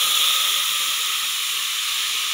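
Water hitting hot oil and browned onions in an aluminium pot, hissing loudly as it flashes to steam; the hiss eases a little over the two seconds.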